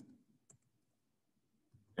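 Near silence broken by a faint computer keyboard keystroke about half a second in and a slighter tick near the end.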